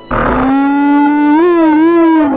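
Martian tripod's horn: a loud blaring call that starts abruptly, then holds one pitch, rising slightly and wavering near the end.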